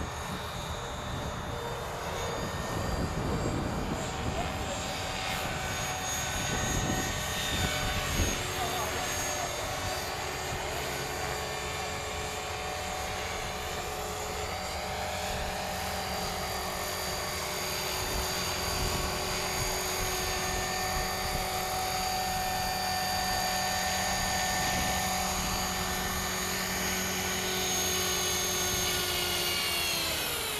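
Electric 450-size RC helicopter in a Hughes 500 scale body flying: the steady high whine of its motor and drive gears with the whir of the rotor. The pitch wavers and shifts as it manoeuvres.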